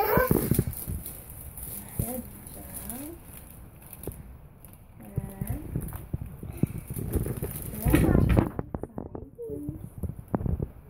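Soft voices without clear words, with scattered light clicks and knocks of handling, and a louder burst of voice about eight seconds in.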